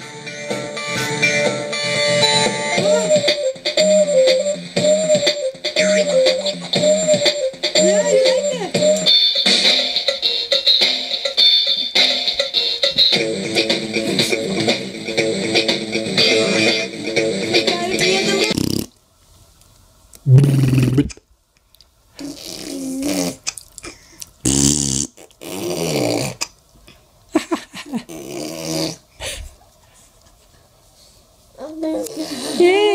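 An electronic melody plays from a children's toy drum pad's speaker, then cuts off suddenly about two-thirds of the way through. After that come a few short, separate sounds with quiet gaps between them.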